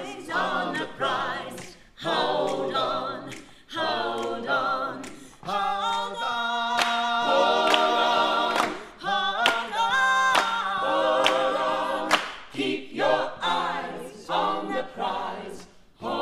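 Ensemble of voices singing a cappella in close harmony, phrase by phrase with short breaths between, and long held chords in the middle.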